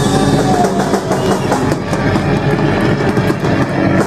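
Punk rock band playing live and loud, the drum kit hitting rapidly under the full band.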